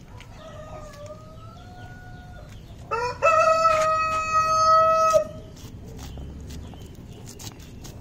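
Roosters crowing: a fainter crow first, then a loud full crow about three seconds in, its last note held for about two seconds. Light clicks and scrapes of a knife shaving corn kernels off the cob.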